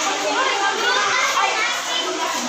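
Many children's voices talking and calling out at once: a steady babble of overlapping chatter in which no single speaker stands out.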